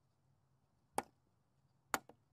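Two sharp clicks, one about a second in and one near the end, part of an even beat of about one click a second.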